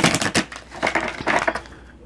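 A deck of oracle cards being shuffled and handled by hand: a run of quick papery rustles and flicks.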